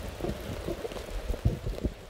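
Rain in a forest, with many irregular low thumps close to the microphone.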